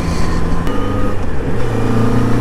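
Yamaha XJ6's 600 cc inline-four engine running under way on the move, through its refitted stock exhaust. About a second and a half in, its pitch dips briefly and climbs back, then runs steady again.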